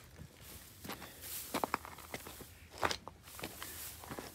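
A hiker's footsteps on rocky creek-bed ground: irregular, fairly quiet crunches and clicks of boots on stones and gravel.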